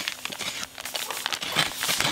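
Dry semolina poured from a plastic packet into a glass bowl: a grainy rush of falling grains with crackly rustling of the packet.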